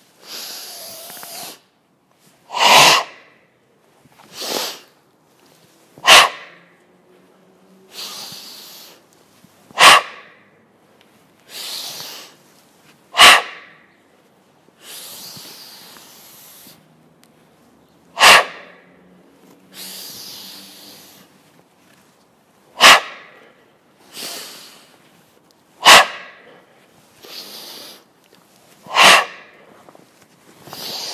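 Goju Ryu-style breathing during chishi exercises: about nine sharp, forceful exhalations, each short and loud, alternating with longer, softer inhalations, the breath kept in step with the movements.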